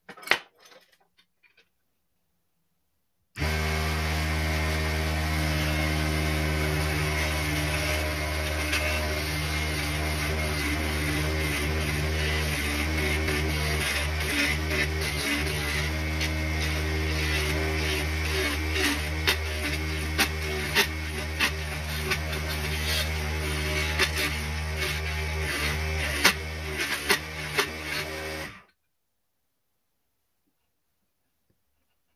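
Mini wood lathe's motor running at a steady hum, starting suddenly a few seconds in and cutting off near the end. From about halfway on, a hand file held against the spinning wood blank adds scraping and sharp ticks over the hum. A few small clicks come before the motor starts.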